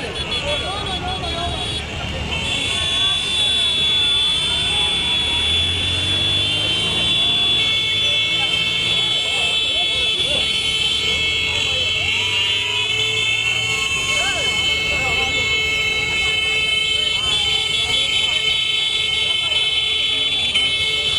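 Many motorcycles riding past together, their engines running with rising and falling revs, horns held and tooting nonstop over a crowd shouting and cheering.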